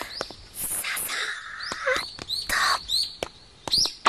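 Birds chirping: a series of short, quick chirps.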